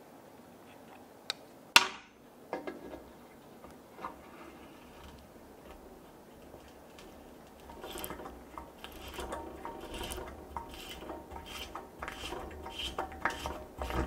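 A 1/4"-20 spiral-point tap turned by hand into a pilot hole in aluminium plate with cutting fluid: from about eight seconds in, a run of light, irregular metallic scrapes and clicks as it cuts the threads, cutting easily. Near the start, a sharp metallic click.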